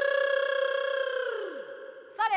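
A single held electronic tone, steady for about a second and a half, then sliding down in pitch and fading out. It plays as a comic sound-effect sting on a reaction shot.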